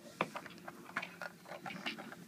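Light plastic clicks and taps of Lego pieces being handled, about a dozen small irregular ticks over two seconds.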